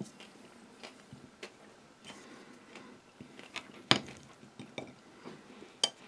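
Table knife cutting a firm block of compressed figs and almonds on a ceramic plate, the blade clicking against the plate. A few scattered light clicks, with a sharper clink a little past the middle and another just before the end.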